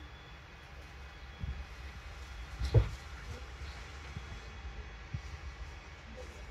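Alexander Dennis bus running with a steady low rumble, with a few knocks and one louder thump nearly three seconds in.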